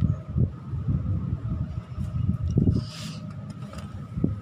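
Irregular low rumble and knocks of wind and handling on a handheld camera microphone as the camera is swung around, with a brief hiss about three seconds in.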